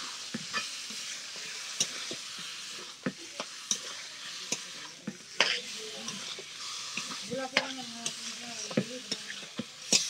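Chicken pieces frying in oil in a steel wok, sizzling steadily while a spatula stirs them, scraping and clicking against the pan many times.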